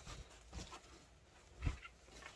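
Faint handling sounds as two hockey jerseys are moved: soft fabric rustling, with one short low thump about three-quarters of the way through.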